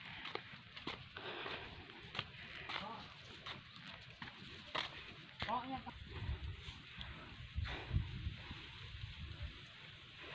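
Faint footsteps and handling taps of someone walking with a phone, with low wind bumps on the microphone around six to eight seconds in and a brief, faint voice-like sound about five and a half seconds in.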